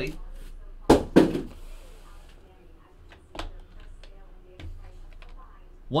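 Two sharp knocks about a second in, then a few faint taps, as things are handled on a tabletop.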